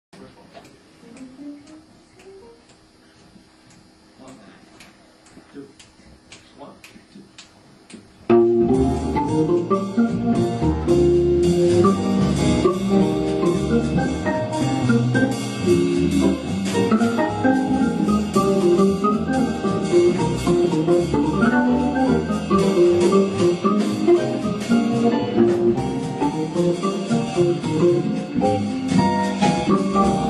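A jazz combo of Hammond B3 organ, upright bass, electric guitar and drums playing a swing tune. It comes in suddenly and loud about eight seconds in, after a quiet stretch of faint tones and clicks.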